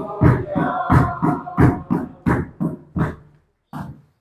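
A church congregation singing a hymn together over a steady beat of about three strokes a second. The singing trails off after about three seconds, and a last stroke falls just before the end.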